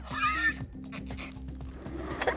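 A woman's high, squealing giggle in the first half second, stifled behind her hand, with quiet background music underneath.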